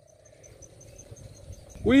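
An insect, cricket-like, chirping in a fast, even series of short high notes, about ten a second, that fades out past the middle. A man's voice starts at the very end.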